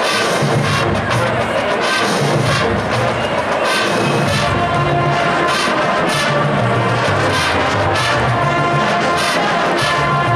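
College marching band playing an Afro-Cuban jazz number: full brass with trombones and trumpets, driven by steady percussion, with no break.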